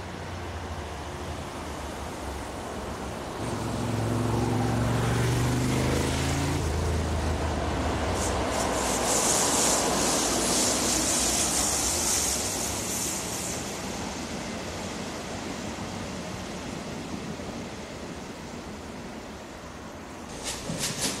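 DB Baureihe 112 electric locomotive hauling double-deck coaches past at speed: a rising rumble, then a humming tone that drops in pitch as the locomotive goes by, then a high hiss of the coaches' wheels on the rails that fades away.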